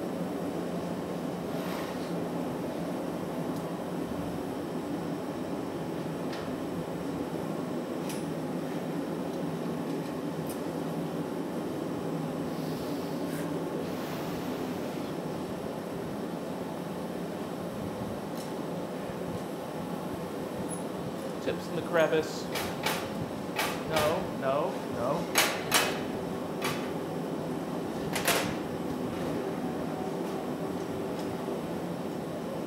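Steady roar of a glassblowing glory hole's burner. Near the end come several sharp taps and clicks of metal tools.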